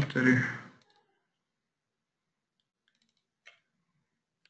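A man's voice for the first second, then a few faint computer mouse clicks in the last second and a half, the last of them a double-click that opens a program.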